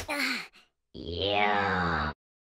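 A cartoon larva character's wordless voice: a short falling cry, then, after a pause of about half a second, a long moaning call whose pitch slides down.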